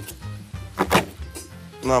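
A chef's knife chopping through a fish on a wooden cutting board: one sharp knock about a second in, over background music with a steady bass line.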